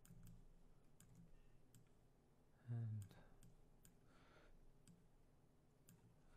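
Faint computer mouse clicks, several scattered single clicks, with a short hum of a voice about three seconds in.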